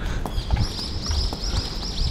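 Soft footsteps on a paved street. From about half a second in, a fast, even run of short high chirps comes in, about four or five a second.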